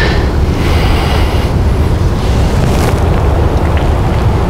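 Wind buffeting the microphone: a steady low rumble with a thin hiss above it and no separate sounds standing out.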